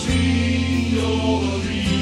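Music: a slow religious song, voices singing held notes over a sustained accompaniment with a steady bass.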